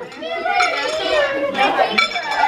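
A group of people talking over one another and laughing.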